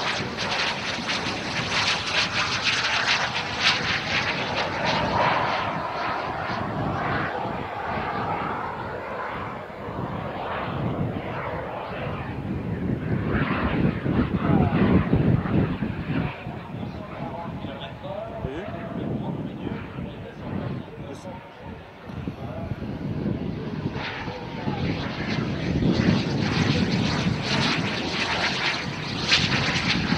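Twin JetCat P200 turbojets of a Cri-Cri microjet in flight: a steady jet noise with a whine that shifts in pitch, swelling and fading as the aircraft passes, loudest about halfway through and again near the end.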